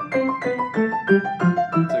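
Piano playing an octave exercise: left-hand block octaves alternate with right-hand broken octaves, bottom note then top note, in an even run of about five notes a second. The run steps down the white keys one position at a time.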